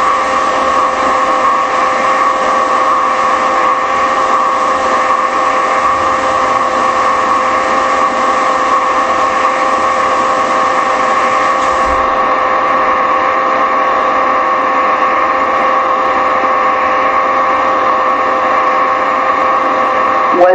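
A loud, steady hum: several fixed tones over a hiss.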